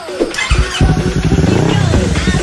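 Yamaha R25's 250 cc parallel-twin engine being revved, starting about half a second in, loud, with its pitch climbing. Electronic music plays underneath.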